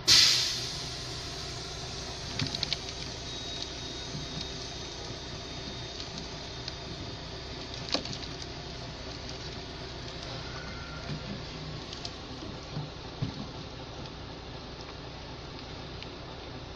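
Light knocks and clicks of a plastic plant pot being handled and tipped as an aloe is worked out of it, a few scattered over a steady background hum. A short loud rushing burst opens it.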